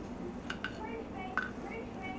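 A spoon scooping sugar out of a measuring cup, with a few light clicks about half a second in and again near a second and a half, under a faint voice.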